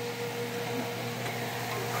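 Steady low hum with a soft hiss while a stockpot of sugar syrup for seafoam candy boils on an electric stove.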